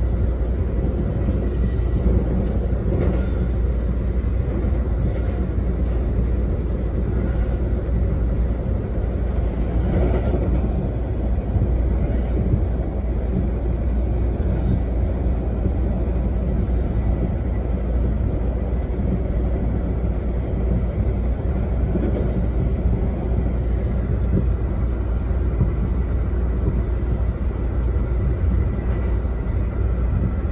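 Steady low rumble of a VIA Rail passenger train running along the track, heard from inside the passenger car, with a few faint knocks.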